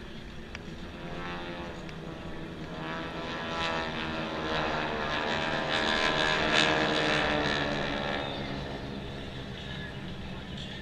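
Formation of F-16 jet fighters flying low overhead, the jet engine noise swelling to a peak about six and a half seconds in and then fading as they pass.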